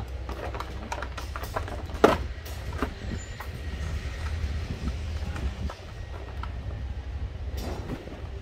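Hard plastic clicks and knocks as a cordless drill and its charger are handled and set into a moulded plastic carrying case, with the loudest clack about two seconds in, over a steady low rumble.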